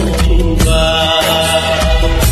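Music of a Bodo gospel song sung to a karaoke backing track: a long held note from about half a second in, over a steady bass.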